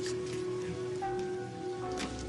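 Soft dramatic background score of sustained held notes, with a higher note coming in about halfway through.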